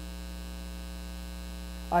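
Steady electrical mains hum: a low, unchanging drone with a stack of evenly spaced overtones.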